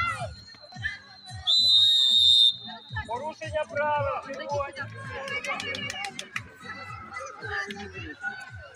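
A sports whistle blown in one steady blast of about a second, starting about a second and a half in and louder than everything else, over children's voices and background music.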